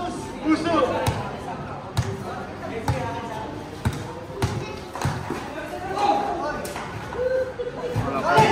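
A basketball being dribbled on a concrete court, bouncing about once a second and then less regularly, with players shouting and talking over it.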